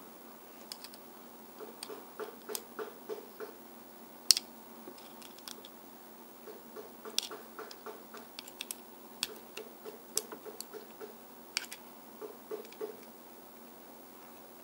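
Light clicks and scrapes of a small metal blade working against the axle and wheels of a die-cast Hot Wheels car, as a bent axle is straightened. Runs of soft ticks come at about five a second, with one sharper click about four seconds in.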